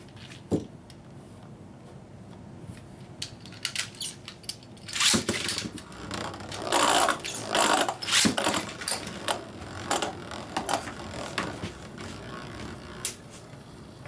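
Beyblade spinning tops in a clear plastic stadium: a single click, then from about five seconds in an irregular run of clicks and rattles as the tops spin and knock against each other and the stadium.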